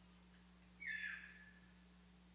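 A single short high-pitched cry, about half a second long and sliding slightly downward, about a second in, over a faint steady hum from the sound system.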